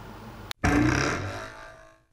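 Faint room tone, then an abrupt cut about half a second in to the channel's outro sound effect, a loud, tone-rich sound that fades away over about a second and a half.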